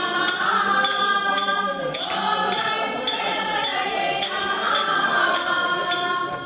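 Group of women singing a Kannada devotional bhajan in unison into microphones, kept in time by a crisp percussion beat about twice a second.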